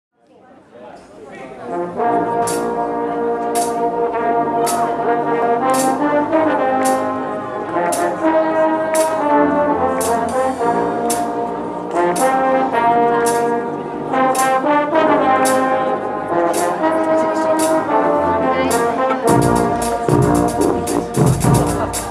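Live brass band of trumpets, trombones and sousaphones playing held chords, fading in over the first two seconds, with a sharp percussion hit about once a second. Near the end the drums come in with a fast, busy pattern and the low end fills out.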